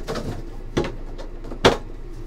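Handling noise as a cardboard trading-card box is lifted and shifted on a table: a soft knock a little under halfway through, then a sharp knock near the end as the box is set down, with faint rustling in between.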